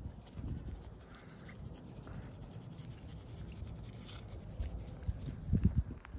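Footsteps and scuffing on dry dirt ground, quiet, with a few heavier thuds near the end.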